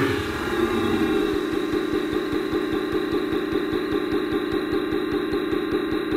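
Outro of an electronic dubstep track: a sustained synth chord over a quick, regular pulsing in the bass, about six pulses a second.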